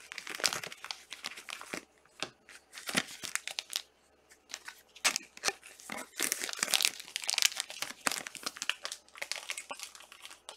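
Clear plastic card sleeves and rigid top-loaders crinkling and clicking in irregular bursts as trading cards are slid into them and handled.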